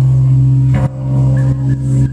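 Live band playing a slow psych-pop song, recorded loud and distorted on a handheld camera's microphone: a held low note dominates, with a sharp hit and a brief dip in level a little under a second in.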